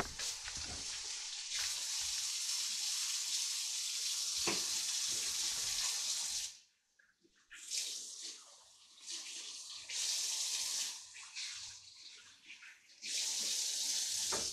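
Kitchen sink tap running with water splashing over hands being washed. The flow stops suddenly about six and a half seconds in, then runs again in three shorter spells.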